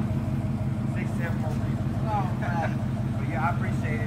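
A motor vehicle's engine idling with a steady low hum, with faint voices and calls over it.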